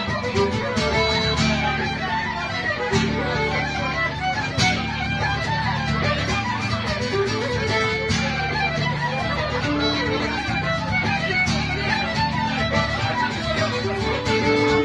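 Fiddle and acoustic guitar playing a traditional tune together, live through a small PA.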